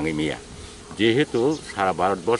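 A man speaking in short phrases to reporters, with a brief pause near the middle.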